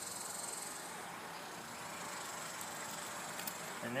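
Steady, high-pitched chirring of insects, with a few faint clicks near the end.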